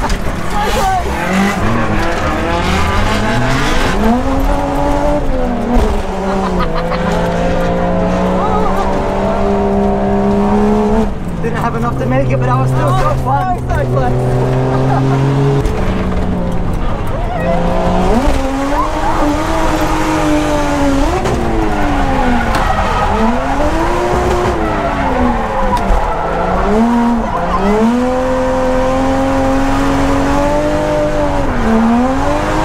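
Toyota JZX100 Chaser's straight-six engine, heard from inside the cabin, revving up and down again and again through a drift run, with a longer steady stretch midway, and the tyres squealing.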